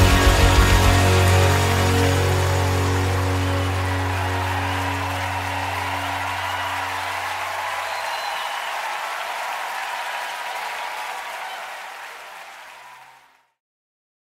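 Worship band's closing chord ringing out: the drum beat stops about a second in, a low bass note dies away around eight seconds in, and the sound fades out to silence near the end.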